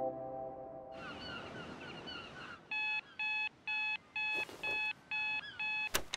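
Digital alarm clock beeping: seven short electronic beeps, about two a second, stopped by a press of its button.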